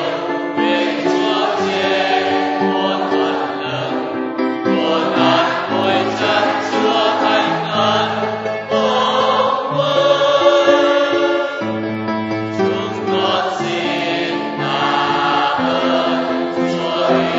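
A choir singing a slow hymn, with long held chords that change every second or two.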